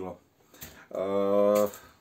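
A man's voice: speech trailing off, then after a short pause one steady drawn-out vocal sound lasting just under a second, like a hesitation before he goes on.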